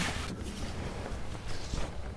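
Faint rustling of roof-top tent canvas as a window cover is handled, over a low rumble.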